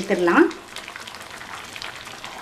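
Onion sambar simmering in a stainless-steel saucepan on the stove: a faint, steady bubbling hiss.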